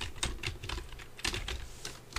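Typing on a computer keyboard: a dozen or so quick, irregular keystrokes entering a file name, with a short pause near the middle.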